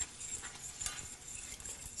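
A spoon stirring thick tomato sauce in a metal saucepan: faint stirring with a few light clicks of the spoon against the pan.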